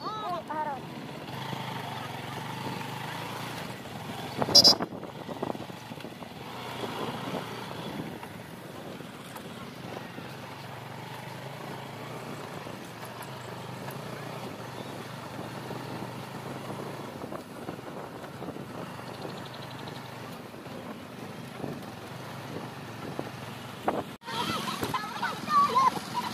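Motorcycle engine running steadily while riding, with wind on the microphone. A sharp knock about four and a half seconds in is the loudest moment.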